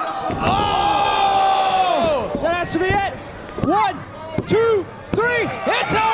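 A body landing hard on the wrestling ring's canvas from a top-rope dive, then a long shout held for about two seconds. After it come several short rising-and-falling yells with a few sharp knocks on the mat between them.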